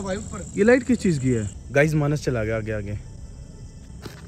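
A steady high-pitched cricket trill that fades about a second and a half in, under a few short bursts of a person's voice.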